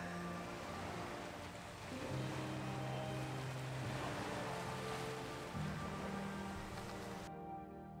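Slow background music of held, sustained chords over a steady outdoor hiss; the hiss cuts off abruptly near the end, leaving the music alone.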